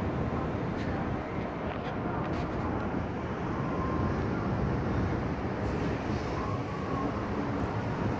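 Steady low rumbling outdoor noise with no single clear source and no speech.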